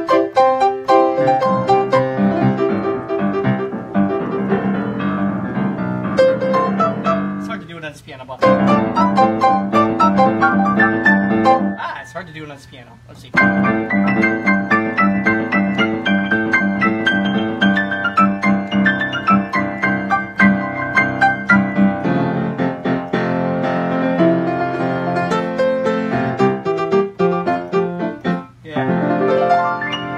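Freshly tuned church grand piano played with both hands, fast runs over steady repeated chords in the lower register. The playing breaks off briefly about eight seconds in and again around twelve to thirteen seconds, then carries on.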